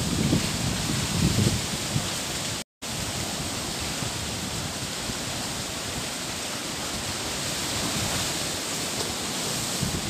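Steady rushing outdoor noise with no distinct events, with some low rustling and handling rumble in the first second or so. The sound cuts out completely for a moment a little under three seconds in.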